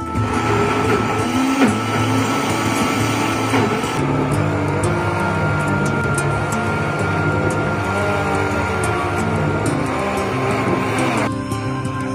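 Electric countertop blender running, puréeing boiled rice straw into a fine pulp: a steady motor whine with churning that starts at the beginning, drops slightly in pitch near the end and stops about 11 seconds in. Background music plays underneath.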